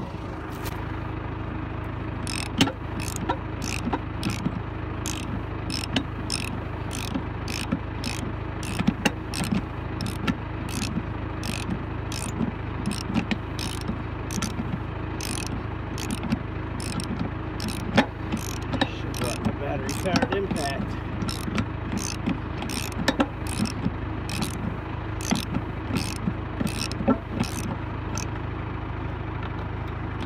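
An engine idles steadily under a run of sharp metallic clicks, about two a second, from wrench work on a trailer wheel's lug nut.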